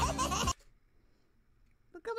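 Cartoon soundtrack of music and a character's voice that cuts off abruptly about half a second in, followed by near silence.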